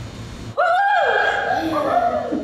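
A child's high-pitched voice calling out in one long, held call that starts about half a second in, rises and then falls.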